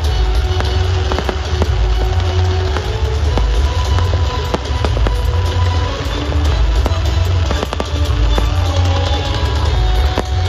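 Music with a heavy bass beat and held notes, with aerial fireworks going off through it as many scattered sharp pops and crackles.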